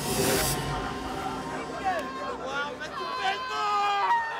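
A brief burst of hiss-like noise at the very start, then several people's voices talking and calling out.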